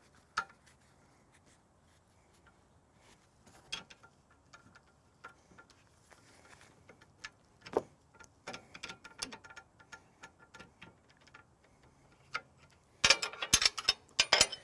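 Faint, scattered metallic clicks and ticks of wrenches working on the hydraulic hose fittings at the diverter valve, with a burst of louder clinking near the end.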